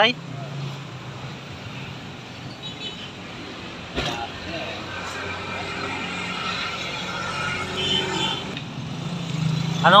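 Passing road traffic of cars and motorcycles, a steady hum that swells about eight seconds in, with one sharp knock about four seconds in.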